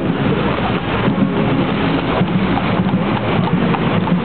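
Tramp of a column of guardsmen's marching boots on a paved road, as a run of quick, uneven knocks under a loud, steady rush of street noise and wind on the microphone.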